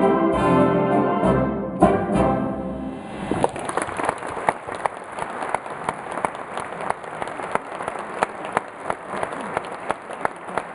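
Concert wind band of brass and woodwinds finishing a waltz arrangement, with a final accented chord about two seconds in that dies away. From about three seconds in, the audience applauds.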